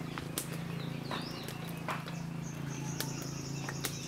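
Rural outdoor ambience by a wood cooking fire. Scattered sharp crackles from the fire sit over a low steady hum. A bird chirps about a second in, and a high, pulsing buzz joins about halfway through.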